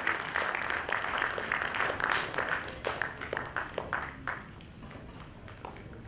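Audience applauding in a hall, the clapping thinning out and dying away about two-thirds of the way through.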